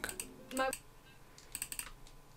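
Faint, quick clicks at a computer keyboard or mouse used to pause and control video playback: a couple at the very start and a fast little cluster about a second and a half in. About half a second in there is a brief voice-like sound.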